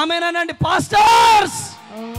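A man's amplified voice shouting: a brief drawn-out word, then a loud, strained yell lasting about a second that fades out near the end.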